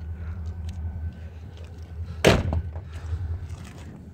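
A single sharp thump about two seconds in, over a steady low hum.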